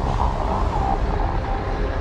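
Cinematic sci-fi sound design: a deep, steady rumble with a faint wavering tone above it.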